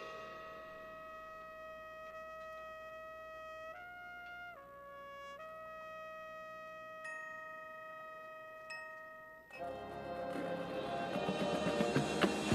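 Marching band music: a soft passage of a few long held notes from a solo brass line, with a couple of light bell-like mallet strikes, then the full band of brass and percussion comes in loud about nine and a half seconds in and builds.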